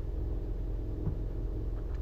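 Steady low background rumble and hum in a pause between speech.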